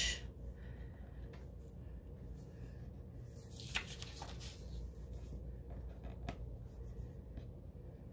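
Soft rustling and rubbing of paper planner pages being handled and smoothed by hand on a cutting mat, with a few faint clicks and a clearer rustle about three and a half seconds in as a page is lifted.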